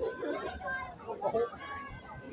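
Chatter of a crowd of spectators, several voices at once, with children's voices among them.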